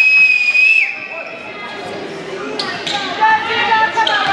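Gym sounds during a free-throw setup: a brief high steady tone at the start, then voices calling out in the hall and a basketball bouncing on the hardwood floor.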